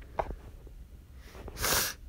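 A person's short, breathy burst of air close to the microphone, a sneeze-like rush of noise about one and a half seconds in.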